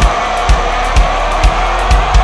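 Heavy metal music: a male voice holds one long sung note over kick-drum hits about two a second.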